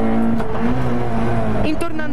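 Fiat 600 Kit rally car's engine pulling at steady high revs, heard from inside the cabin, its note dipping briefly near the end.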